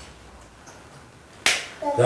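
A single sharp snap, like a clap, about one and a half seconds in, ringing out briefly in a small room.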